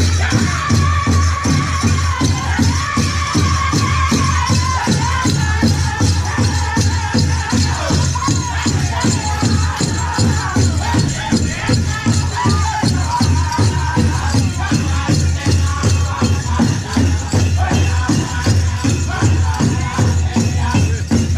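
A pow wow drum group singing a grand entry song over a large shared drum beaten in a steady, even beat.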